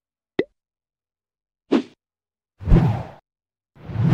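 Logo-animation sound effects: a quick falling blip, then three short pops about a second apart, the last two fuller and louder, with dead silence between them.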